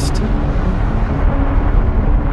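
Erupting volcano's rumble: a steady, loud, deep noise without separate blasts.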